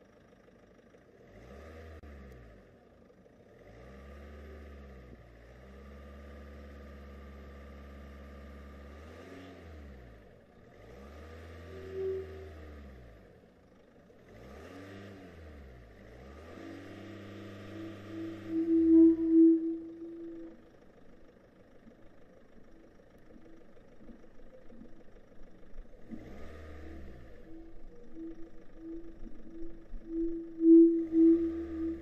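Cars passing one after another, each sound swelling and fading away over a few seconds. From about 17 seconds a steady pitched tone comes in, pulsing in the last few seconds.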